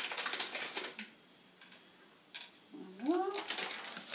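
Paper bag rustling with light clicks as pine nuts are shaken out onto a plate, for about the first second. A woman says "voilà" near the end.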